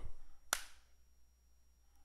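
A single sharp click about half a second in, then near silence.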